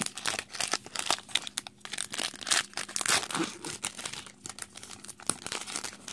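Foil wrapper of a Pokémon Breakpoint booster pack crinkling and tearing as it is torn open by hand: a dense, irregular run of crackles.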